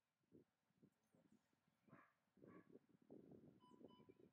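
Near silence: faint, irregular low sounds that get busier in the second half, with a brief faint steady beep near the end.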